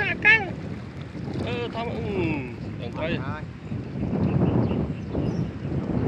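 Wind rumbling on the microphone, strongest in the second half, with short fragments of men's voices in the first half.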